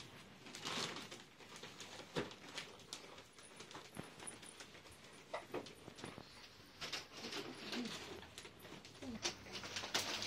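Quiet room with scattered faint clicks and rustles of children handling wrapped gift boxes, and a few brief soft vocal sounds.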